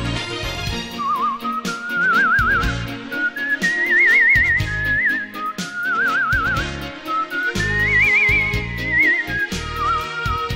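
A person whistling a slow song melody with a wide, wavering vibrato on the held notes, over instrumental backing music. The melody climbs twice to high held notes, around the middle and again near the end.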